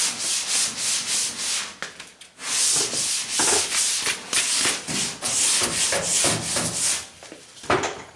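Sanding block rubbed back and forth over FeatherFill G2 primer on a car hood, in quick, even strokes about three a second. The strokes pause briefly about two seconds in and again near the end.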